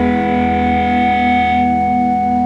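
A held chord on a distorted electric guitar with effects, ringing out with a slow pulsing wobble and no drums; its upper notes fade away about one and a half seconds in.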